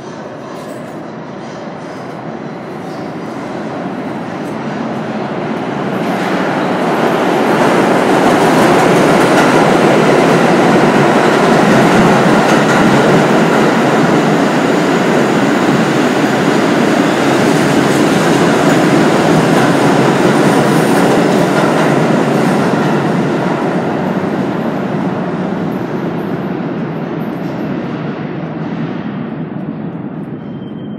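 New York City subway train running along the station track. Its rumble builds over several seconds, stays loud through the middle, then slowly fades as it moves off.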